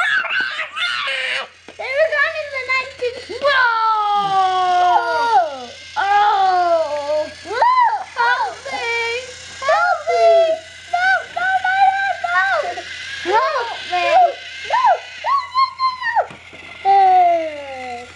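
Children's high-pitched voices calling and vocalizing almost continuously, sliding up and down in pitch, with no clear words.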